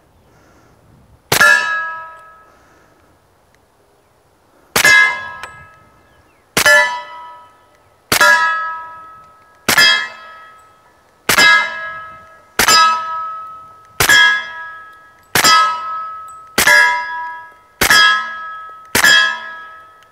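A suppressed Smith & Wesson M&P 45 pistol in .45 ACP, fitted with an AAC Ti-Rant suppressor, fires twelve shots. Each muffled shot is followed by the ringing clang of a steel target plate that fades over about a second. The first shot comes about a second in; after a pause of about three seconds the rest follow at a steady pace, one every second and a half or so.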